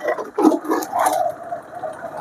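Motorcycle engine running as the bike rides along a road.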